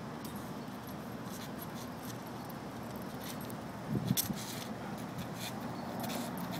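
Light metallic jingling of a dog's leash clip and collar as a German Shepherd walks on a leash, in scattered small clicks over a steady outdoor background hiss. A short louder sound comes about four seconds in.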